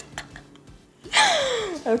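A woman's breathy, laughing exclamation about a second in, one long vocal sound gliding down in pitch.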